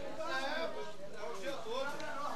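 People talking: casual speech that the transcript did not catch.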